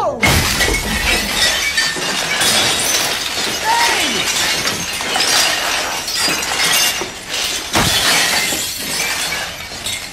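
Ceramic mugs smashing one after another as a long wooden pole knocks them off the shelves: a continuous crash of breaking crockery with many sharp impacts, the heaviest just after the start and again about eight seconds in.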